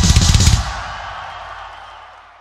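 A live metal band's closing burst of rapid drum hits over heavy bass, lasting about half a second, then a ringing that dies away steadily.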